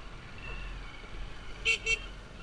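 Dirt bike engine running along a dirt track with a steady low rumble, and two short horn toots close together near the end.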